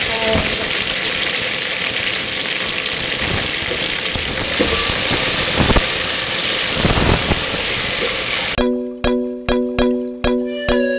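Steady sizzle of a tomato-and-onion sauce frying in an aluminium pot, with a wooden spoon scraping and knocking against the pot a few times as it is stirred. About eight and a half seconds in, this cuts to background music with a repeating plucked melody.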